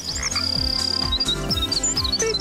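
Short jungle-style transition sting: steady low music notes under repeated low falling swoops, with high chirping, whistling animal calls like birds and frogs on top.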